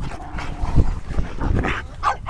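A pack of dogs giving short whines and yips among themselves, with a low rumble underneath.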